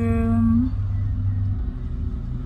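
A woman's drawn-out hum of hesitation at the start, over the steady low rumble of a moving car heard from inside the cabin; the rumble eases off a little past halfway.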